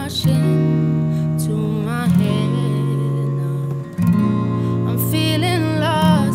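Acoustic guitars playing slow sustained chords, a new chord struck about every two seconds, under a young woman's soft sung melody.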